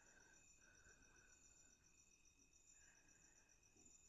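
Near silence: only a faint, high background tone that pulses rapidly and steadily, with faint steady hiss.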